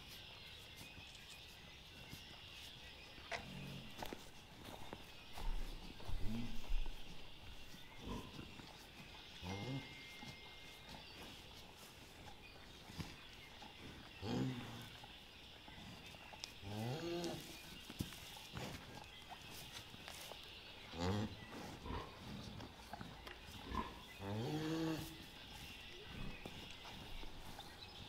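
Jersey cow giving short, low, soft moos every few seconds to her newborn calf, the rumbling calls a cow makes while licking and bonding with a calf just after calving.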